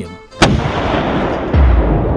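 Cannon fire sound effect: a sharp blast about half a second in, trailing into a long rumble, with a second, deeper boom near the end.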